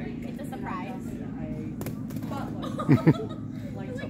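A person laughing: two short, loud cries falling in pitch near the end, over a steady low hum. A single sharp click comes about two seconds in.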